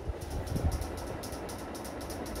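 Steady low background rumble of room noise, with no speech.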